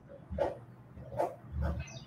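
A few faint, short animal calls, three in about two seconds, with a high falling chirp near the end.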